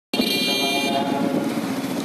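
A vehicle horn sounds for about a second, over the steady engine and wind noise of a motorcycle being ridden.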